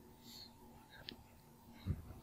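Quiet room tone with a faint steady hum, broken by a soft breath-like hiss, a small click about a second in and a brief low thump near the end.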